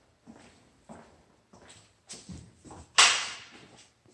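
Footsteps on a hard tiled floor in empty, bare rooms, a step about every half second. About three seconds in comes a single sharp knock, the loudest sound, which fades out over most of a second.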